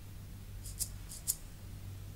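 Quiet stretch of a film-score recording: a steady low hum with two short, high, hissing rasps about half a second apart near the middle.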